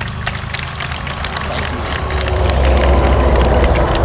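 Road traffic: the low engine rumble of a heavy vehicle on the highway, growing louder through the second half.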